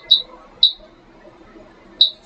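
Short high-pitched key-press beeps from a Siemens FC922 fire alarm panel's keypad as the access password is entered: two beeps in the first second, then a pause, and one more at the end.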